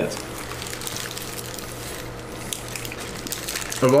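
Quiet wet chewing of soft pulled pork sandwiches, with a few faint clicks, over a steady low hum.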